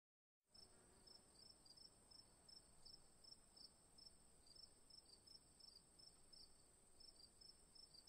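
Crickets chirping faintly: a steady high trill with short, regular chirps about three a second.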